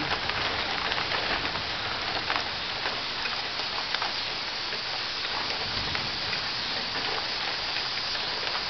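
Rain pouring steadily: an even hiss with scattered drop ticks.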